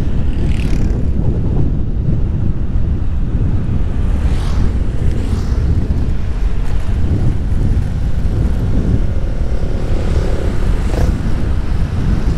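Strong wind on the microphone of a moving motorcycle, a steady low rumble, with the bike's engine and road noise under it.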